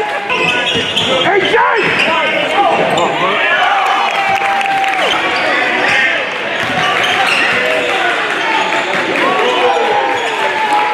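Live basketball game sound on a hardwood gym floor: a basketball bouncing, sneakers squeaking in many short squeals as players cut and stop, and players' and spectators' voices in a large hall.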